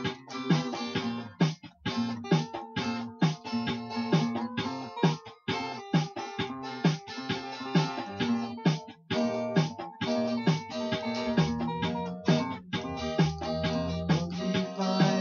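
Acoustic guitar strummed in a steady rhythm, an instrumental passage of a devotional song with no singing.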